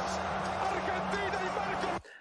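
Played-back football TV broadcast audio: a commentator's voice over stadium crowd noise and a steady low hum, cutting off suddenly at the end as the video is paused.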